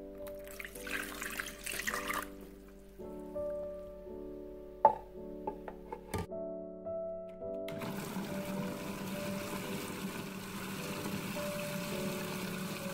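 Water poured into a plastic food-chopper bowl of soaked dried figs for a couple of seconds, then a few sharp plastic clicks as the chopper is closed. From about eight seconds in, the electric chopper runs steadily, blending the figs with their soaking water into a paste. Background music plays throughout.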